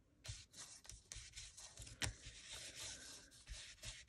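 Ink pad rubbed over the raised edges of an embossed cardstock panel: a faint, dry rubbing with small taps as the pad meets the paper, and one sharper tap about two seconds in.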